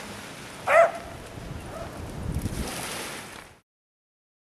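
A dog barks once, about a second in, over the faint wash of small waves at the water's edge. The sound cuts off suddenly near the end.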